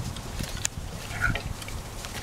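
Chimpanzee making short low calls, with scattered clicks and knocks around it.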